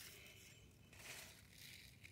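Near silence, with a faint rustle of cucumber leaves being moved by hand.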